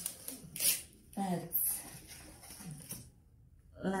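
A woman's short murmur, with light clicks and rustles from handling a polystyrene takeaway box and wooden chopsticks.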